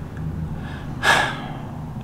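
A man's sharp breath in, once, about a second in, over a low steady hum.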